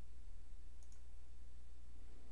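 A single faint computer mouse click a little before a second in, over a steady low hum.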